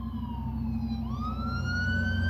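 Fire engine's wail siren approaching. Its pitch falls slowly, then sweeps back up about a second in, over a low engine rumble, and both grow louder.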